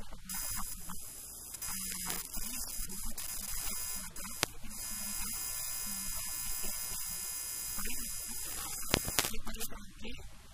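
A steady electrical buzz and hiss, like interference on the audio line, runs under a woman's talking and cuts off about nine seconds in, with a few sharp clicks along the way.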